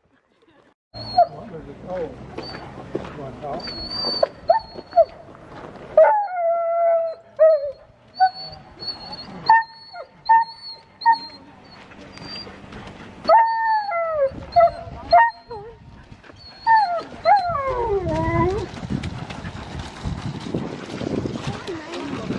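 Alaskan malamute sled dogs howling and yelping, with repeated rising and falling cries starting about six seconds in.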